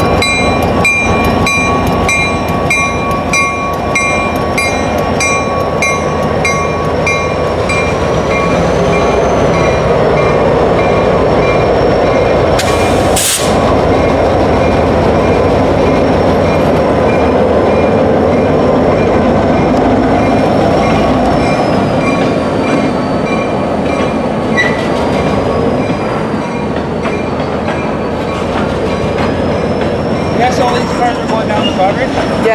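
Diesel freight locomotives pulling slowly away at close range, their engines running under a steady rumble of wheels on rail. For the first eight seconds or so a locomotive bell rings at about two strokes a second. After that a thin, wavering wheel squeal comes in, with a brief loud hiss at about thirteen seconds.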